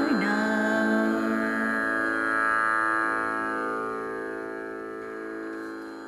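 The end of a Carnatic song: the singer's last wavering note stops just after the start, and the accompanying instruments hold sustained tones that slowly fade away.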